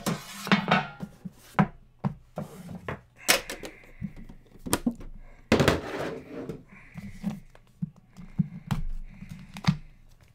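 Cardboard trading-card boxes being handled on a table: slid off a stack, set down and opened. The result is a scattered run of knocks and thuds with a couple of short sliding scrapes.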